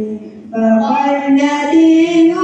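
A man's voice in melodic religious chanting, drawn out in long held notes. It breaks off for a breath just after the start and takes up the chant again about half a second in.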